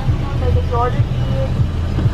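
Steady low rumble of the Toyota Fortuner idling at the drive-thru, heard inside the cabin, with a thin, faint voice through the order speaker greeting 'Good afternoon, may I take your order please?'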